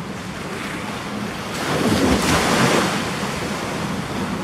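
Small sea waves washing in on the shore, swelling louder about a second and a half in and easing off again, with steady wind noise on the microphone.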